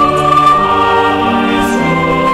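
A choir singing a church anthem in long held notes, several voice parts together over a low bass line, the chord shifting every second or so.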